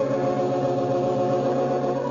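Organ music playing sustained chords, changing to a new chord right at the end.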